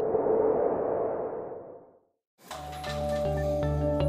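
A transition whoosh with a faint ringing tone fades out over about two seconds. After a brief silence, background music with a steady pulsing beat starts about two and a half seconds in.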